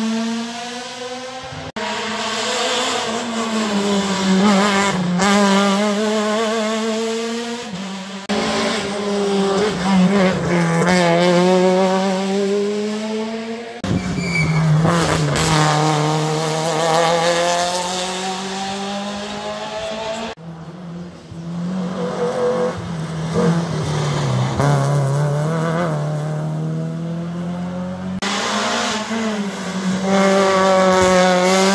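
Rally car engines accelerating hard past the camera one after another, the pitch climbing and dropping back with each gear change. The sound jumps abruptly several times where clips are cut together.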